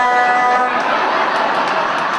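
Comedy club audience laughing, a dense crowd laugh that builds after the comedian's voice trails off and then slowly eases.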